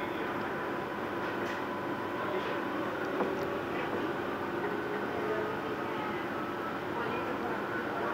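Cercanías Madrid commuter train running at speed, heard from inside the carriage: a steady, even running noise with faint steady tones.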